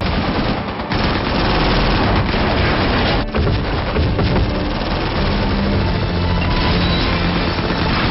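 Sustained automatic gunfire from several guns firing at once, a dense continuous volley riddling a car with bullets. A low music score sounds under it from about halfway.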